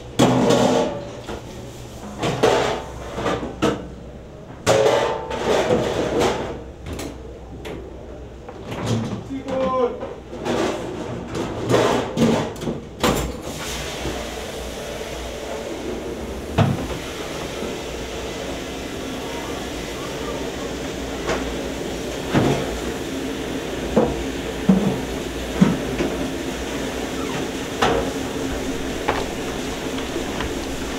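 A person's voice over the first dozen seconds, then the steady hum of a restaurant dish room with scattered clinks and knocks of dishes being handled.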